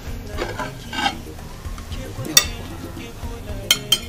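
Ceramic plates clinking and scraping on a table as a meal is set out: a few light clatters early, one sharp clink about halfway through, and two quick clinks near the end.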